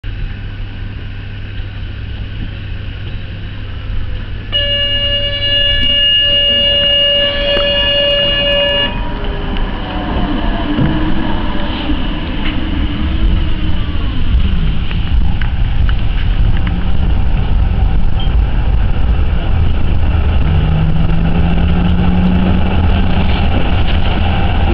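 Tram ride: a steady low rumble, then a held warning tone lasting about four seconds, after which the rail and wheel rumble grows louder as the tram gets under way. A low motor whine rises in pitch near the end.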